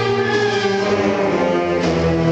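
Concert band of woodwinds and brass playing, holding sustained chords and moving to a new chord near the end.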